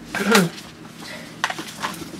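A short hum-like vocal sound near the start, then brief rustles of a paper dust jacket being handled and set aside from a hardcover book.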